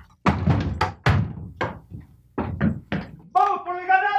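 A rapid run of heavy thuds and knocks, like doors and furniture being banged about. Near the end a woman cries out in a high, sustained voice.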